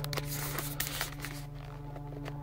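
Handling noise from a hand-held phone camera being moved about: rustling and a few soft clicks, most of them in the first second, over a steady low hum.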